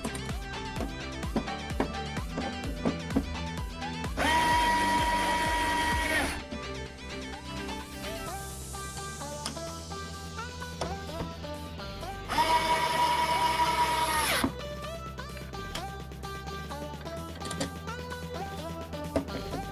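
Cordless electric screwdriver running twice, about two seconds each time, with a steady high whine while driving the screws of a VESA mounting plate into the back of a monitor. Background music plays throughout.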